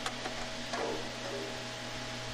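A steady low hum with a faint hiss, and a single faint click at the very start.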